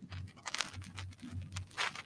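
Faint gulps and small clicks as a person drinks water from a glass, a few low thuds about half a second apart.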